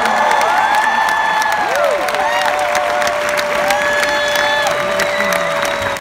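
Large arena audience cheering and applauding, with whoops and whistles rising and falling over the clapping. A single held tone runs underneath from about two seconds in.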